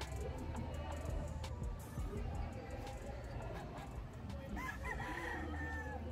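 A gamefowl rooster crows once near the end: a broken, stuttering start, then a long held note that sinks slightly in pitch. Steady background noise and a low hum run underneath.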